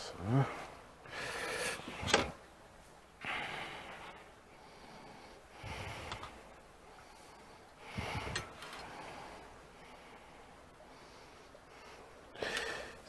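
A person's breaths and a short grunt of effort close to a clip-on microphone, in several separate puffs a second or two apart, while a portion of pudding is lifted onto a plate with a metal spatula and knife. One sharp click of metal on the plate about two seconds in.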